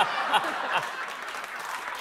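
Studio audience applauding and laughing at a punchline, dying down slightly toward the end.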